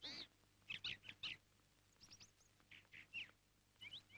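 Faint birds chirping: several clusters of short, high calls spread across a few seconds over a quiet outdoor background.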